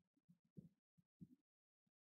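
Near silence, with only a few faint, short low-pitched blips.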